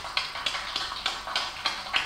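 Hands clapping in a steady beat, about four claps a second, played back through a television speaker.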